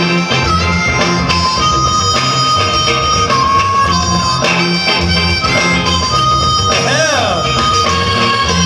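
Music played by the DJ over the hall's sound system: a steady drum-and-bass beat under a held melody line, with a wavering, sliding note about seven seconds in.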